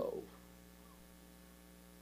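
Near silence with a faint, steady electrical hum, as a man's voice trails off in the first moment.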